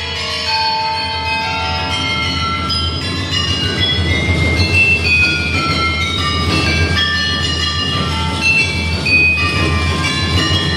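Live contemporary percussion music: a rack of small tuned gongs and other metal percussion ringing in a dense cluster of overlapping, sustained high tones that shift every second or so, over a steady low hum. From about three seconds in, a rougher low rumble joins underneath.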